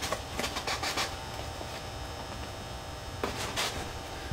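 Hands rubbing and pressing tape down across the seam of a Depron foam tube: a few short scraping noises in the first second and again past three seconds. A steady electrical hum runs underneath.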